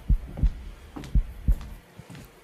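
Heartbeat sound effect in the programme's soundtrack: low lub-dub double thumps, about one pair a second, stopping near the end.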